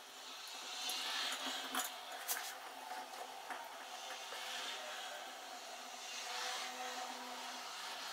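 Quiet rustling and scraping of hands twisting and handling thin wire, swelling and fading, with a few small clicks.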